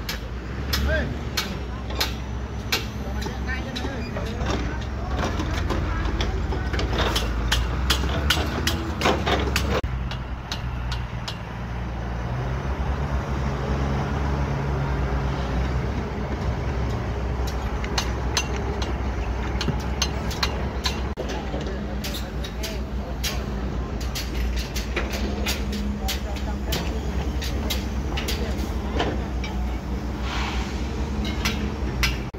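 Construction-site noise: a low, steady rumble of heavy machinery runs throughout. Many sharp metal clanks and knocks come in the first third and again in the last third. In the middle, an excavator's diesel engine hums with a steady tone while it loads a dump truck.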